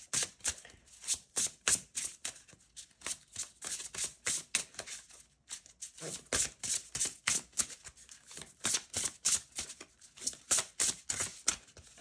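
An oracle card deck being shuffled by hand: a long run of quick, irregular card taps and snaps, about three to four a second, with a brief pause about five seconds in.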